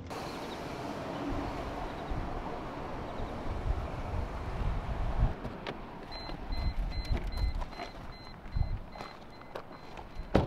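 A car's steady rumble. About six seconds in, the driver's door opens and the car's door-open warning chime beeps about three times a second, with a few clicks, stopping near the end.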